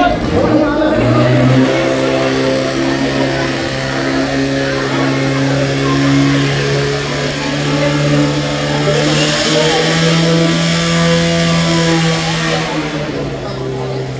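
Portable fire pump engine running hard, a steady pitched drone that steps up in pitch about nine and a half seconds in and drops back near the end, as it feeds two hose jets. A hiss of water spray swells from about nine to twelve seconds.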